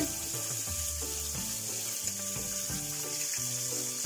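Whole anchovies frying in oil with garlic and guindilla peppers in a stainless steel pan, a steady sizzle.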